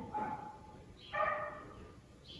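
A dog barking once, a single short, high yip about a second in.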